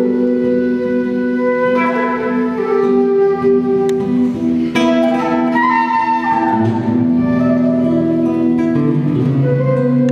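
Transverse flute playing a melody of held notes over plucked acoustic guitar accompaniment.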